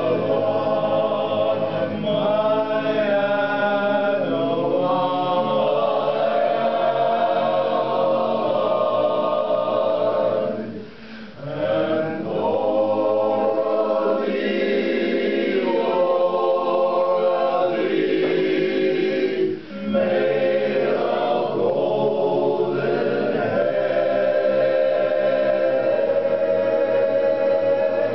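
Men's barbershop chorus singing a cappella in close harmony, with sustained chords. The sound drops out briefly twice, about eleven and twenty seconds in, between phrases.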